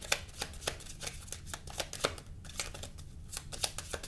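A deck of tarot cards being shuffled by hand: an uneven run of quick card clicks and flicks, several a second.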